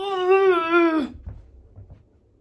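A woman's wordless vocal noise: one drawn-out, pitched sound held for about a second, wavering slightly and falling at the end, a weird noise rather than speech.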